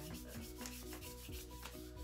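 A wax strip being rubbed fast between the palms to warm the wax before it goes on the skin: a quick, even run of rubbing strokes, about seven a second.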